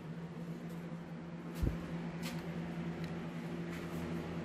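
Steady low machine hum holding one pitch, with a single soft thump about one and a half seconds in and a few faint ticks.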